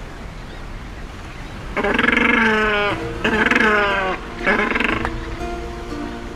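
Male macaroni penguin singing his loud courtship call: three braying phrases starting about two seconds in, the last one shortest.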